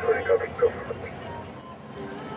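Indistinct voices in the first second, then a steady low hum of a boat engine running.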